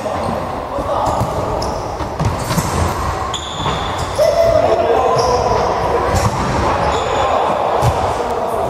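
Futsal being played on a wooden indoor court: repeated kicks and bounces of the ball and brief high squeaks of shoes on the floor, with players calling out, all echoing in a large sports hall.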